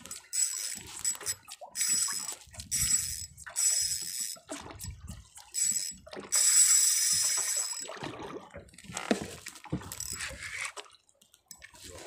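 Spinning reel being cranked in repeated bursts of about a second as a micro jig is worked, its gears giving a high whirring whine; the longest crank starts about six seconds in.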